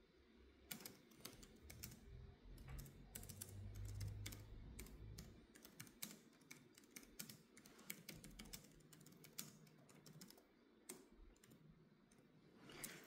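Faint, irregular typing on a computer keyboard: scattered key clicks at an uneven pace, with a faint low rumble in the middle.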